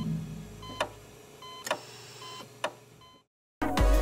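Segment-closing music sting with short electronic beeps and sharp ticks about once a second, fading out. A brief gap of silence follows near the end, then louder music begins.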